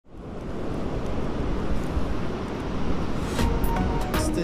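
Wind rushing and buffeting the microphone on an open beach, a steady noise with a heavy, uneven low rumble. Near the end a few short clicks and faint thin tones come in.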